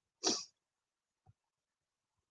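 A single short breath from a woman, a quick noisy puff about a quarter second in, followed by a faint tick.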